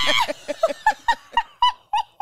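A woman laughing in a run of short, high-pitched pulses, about five a second, that climb in pitch as the laugh goes on.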